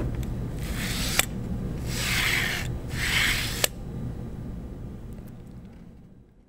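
Small zip ties being threaded into the slots of a printer's X carriage. Their toothed straps rasp in three short strokes about a second apart, with a sharp click after the first and the last. The sound fades out near the end.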